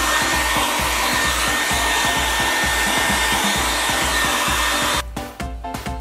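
Small hand-held hair dryer running steadily with a faint high whine under its rush of air, switching off about five seconds in.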